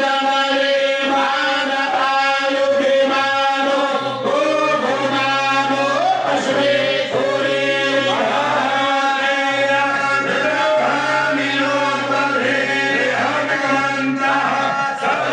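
Voices chanting a devotional mantra in a melodic line over a steady low drone, continuous throughout.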